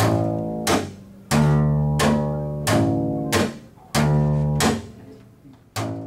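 Upright double bass played slap style: index-finger-pulled low notes alternate evenly with sharp slaps of the string against the fingerboard, about one and a half strokes a second, with a last note near the end.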